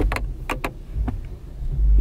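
Low, steady rumble in a car's cabin, with a few short sharp clicks and taps in the first second; the rumble swells near the end.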